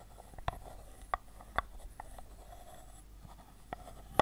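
An unseen object handled close to the microphone: irregular sharp taps and clicks, about half a dozen, over faint light scratching.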